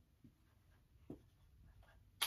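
Faint strokes of a dry-erase marker writing on a whiteboard, two short ones about a quarter second and a second in.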